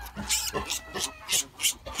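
Dry straw bedding rustling and crunching in several short bursts as hands scoop up a newborn piglet from the pen floor.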